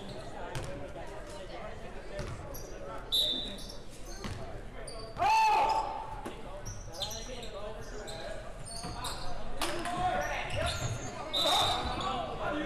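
Live basketball play in a gymnasium: a ball dribbling on the hardwood and sneakers squeaking briefly, with players' and spectators' voices and a loud shout about five seconds in.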